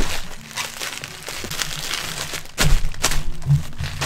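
Bubble wrap crinkling and rustling as it is handled around a glass bowl, with two sharper cracks about two and a half and three seconds in.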